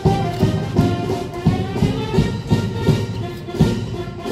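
Brass band playing a march, held brass notes over a steady drum beat of about three strokes a second.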